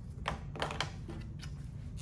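A quick run of small plastic clicks and taps as whiteboard markers are handled and set down, bunched in the first second and then fading.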